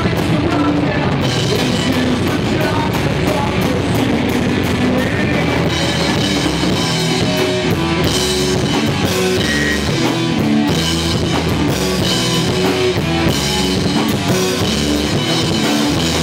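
Rock band playing live and loud in a small room: electric guitars over a Gretsch drum kit with steady cymbal strokes, running without a break.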